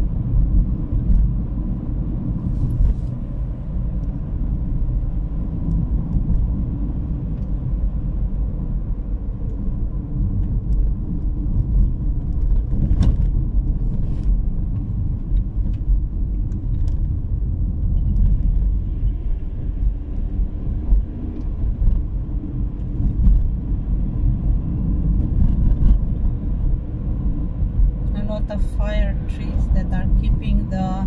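A car's engine and tyre road noise heard from inside the cabin while driving along an open road: a steady low rumble with a few faint clicks. A voice begins near the end.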